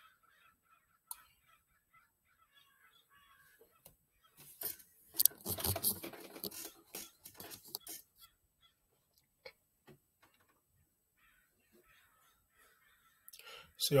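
A flock of crows calling, mostly faint and scattered, with a louder stretch of harsh, noisy sound from about four and a half to eight seconds in.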